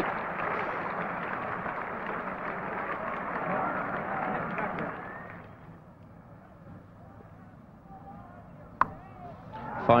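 Cricket crowd chattering, dying down about halfway through to a faint hush. Near the end comes a single sharp crack of bat on ball as a short delivery is cut.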